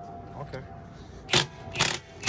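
Cordless impact wrench on a car's rear wheel lug nuts, loosening them to take the wheel off: two short, loud bursts of the wrench about a second and a half apart near the end.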